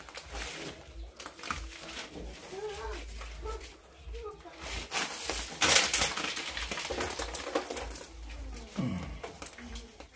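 Scuffling and rustling as a young Southern African python is pulled out from behind plastic roof underlay, with a louder rush of noise lasting over a second about five seconds in. Quiet voices come and go, and someone murmurs near the end.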